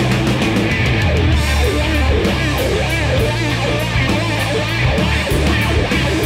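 Instrumental rock music with electric guitar, bass and drums, loud and steady, with no singing.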